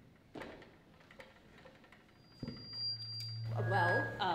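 A few faint knocks, then a steady low hum from a live handheld microphone on a PA system. The hum starts just past halfway and grows louder, and a voice comes in near the end.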